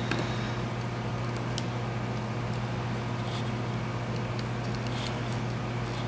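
A few faint, scattered clicks and light taps of clear acrylic case pieces being handled and pressed together around a small controller board, over a steady low hum.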